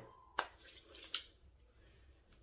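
Faint handling sounds while hair milk is worked by hand into a curly wig: a sharp click about half a second in, light rustling, and a softer click a little after a second in.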